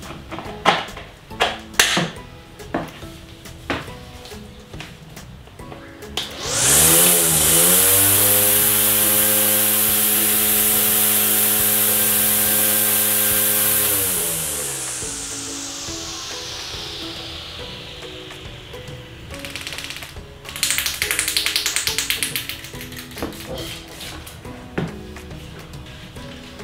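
Xenon CDGT720 20V cordless grass trimmer fitted with its nylon string head, its motor spinning up with a rising whine about six seconds in, running steadily for about seven seconds, then winding down slowly. A few clicks come before it, and a shorter burst of noise follows about two seconds after it dies away.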